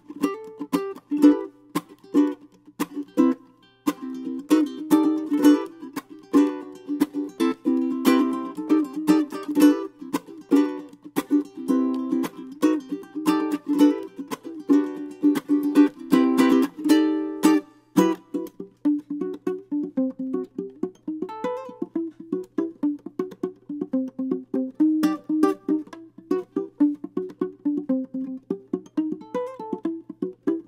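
Ukulele being played, melody notes over chords, busier and louder for about the first eighteen seconds, then sparser, lighter picking.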